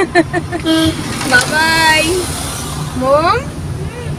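The steady low rumble of a car's engine and tyres heard from inside the cabin while it drives, with voices over it.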